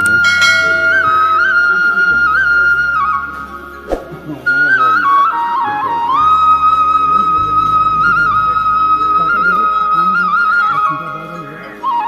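Flute music: a slow melody of long held notes with small turns and ornaments over a low steady drone. The melody breaks off briefly about four seconds in and again just before the end.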